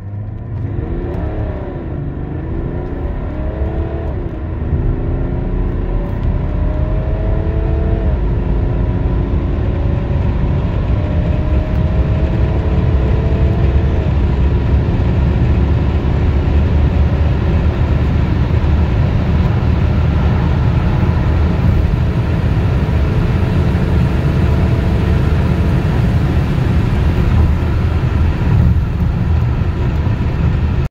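BMW 330d's M57 three-litre straight-six turbodiesel accelerating hard at full throttle, heard from inside the cabin. The engine note climbs and drops back at upshifts about 1, 4, 8 and 14 seconds in, then rises slowly through a long top gear. A low road and wind rumble grows louder with speed.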